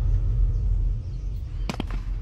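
A deep, noisy rumble that slowly fades, with two quick clicks near the end.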